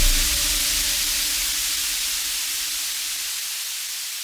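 A wash of synthesized white noise slowly fading away in an electronic dance track's breakdown, the beat and bass gone, with a faint held low tone that stops about three seconds in.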